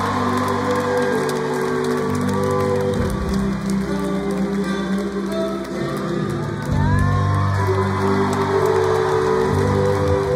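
Live rock band playing in a large arena, heard from the audience: held low chords that change every few seconds, with crowd noise underneath.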